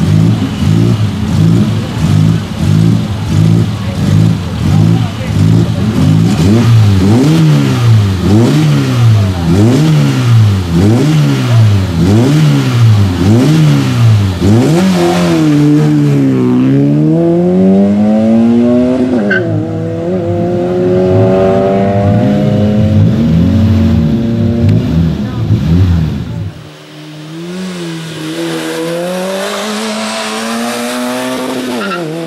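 Peugeot 106 race car's four-cylinder engine revved repeatedly at the start line, the pitch rising and falling about once a second. About 15 seconds in it launches hard and pulls away, with gear changes as the pitch drops and climbs again. Near the end it is heard more faintly, accelerating up the hill.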